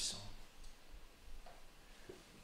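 A man's voice trails off at the start, then a quiet pause of room tone with a few faint, soft clicks.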